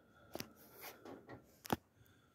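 Two short, sharp clicks about a second and a half apart, the second the louder, with faint rustling between them.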